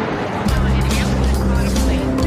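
News program opening theme music, starting abruptly with a loud hit and going on over deep, steady bass notes and held tones.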